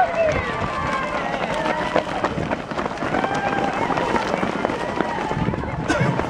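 Many runners' footsteps patter on asphalt as a large pack passes close by, mixed with the overlapping voices of onlookers.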